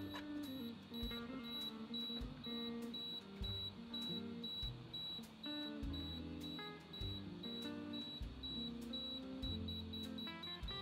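Pentax MZ-50 self-timer beeping in a countdown, a short high beep about twice a second, coming faster near the end as the shutter release nears.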